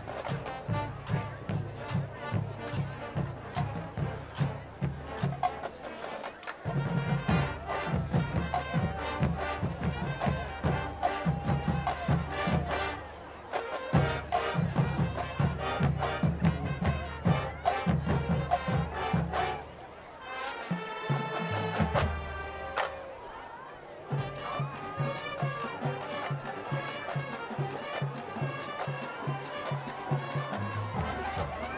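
High school marching band playing a mashup, brass over a steady drum beat. About twenty seconds in, the drums drop out for a few seconds under held brass chords, then the beat comes back.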